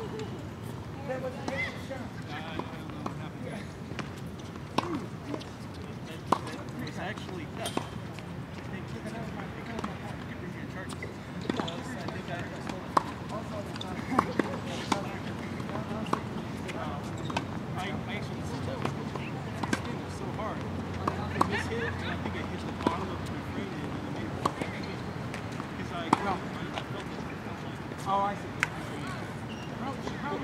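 Outdoor tennis-court ambience: faint, indistinct talk with scattered sharp knocks of tennis balls being struck and bouncing, at irregular intervals.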